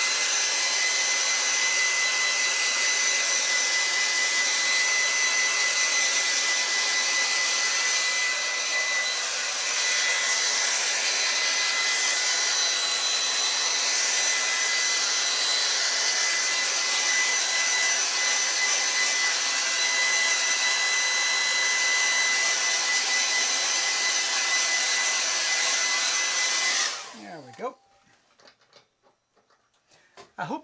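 Hair dryer running steadily over a wet watercolour painting to dry it: a steady rush of air with a high motor whine. It is switched off about three seconds before the end and winds down to quiet.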